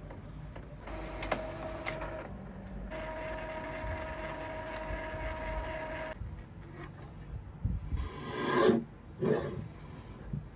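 Epson EcoTank inkjet printer running a print job, its mechanism whirring with a steady hum in two stretches, the second stopping abruptly about six seconds in. After that come a few swishing, rubbing sounds of paper being handled, the loudest a rising swish near the end.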